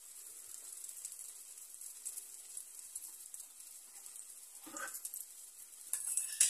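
Goat cheese rounds frying in oil in a non-stick pan: a steady, faint high sizzle with light crackles.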